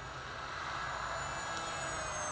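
Electric model flying wing flying past with its motor running: a steady propeller whir with a thin high whine, growing gradually louder, over low wind rumble on the microphone.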